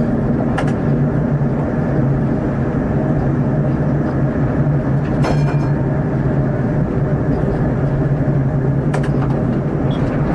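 Inline skate wheels rolling over an asphalt path: a steady, loud rumble with a low drone. Three sharp clicks come about a second in, in the middle and near the end.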